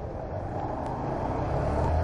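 Small motorcycle engine running at low speed in slow city traffic, a steady low hum with street and traffic noise around it, getting a little louder near the end.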